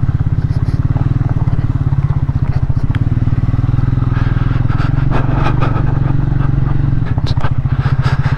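Triumph Speed 400's single-cylinder engine running at steady revs with an even pulsing beat as the motorcycle is ridden slowly over a stony track.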